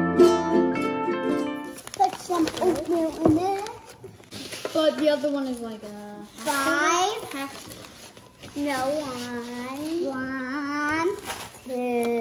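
Light plucked-string background music for about the first two seconds, cutting off abruptly; then children's high voices in short phrases with pauses between them.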